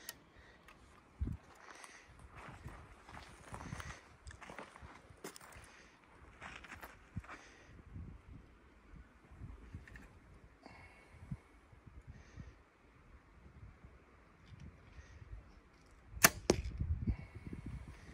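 A compound bow shot near the end: one sharp snap of the string release, followed by about a second of low vibration. Before it, faint rustles and clicks of the bow being handled and drawn.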